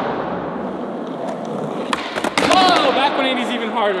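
Skateboard wheels rolling on a concrete floor, a steady rumble, then a couple of sharp clacks from the board about two seconds in.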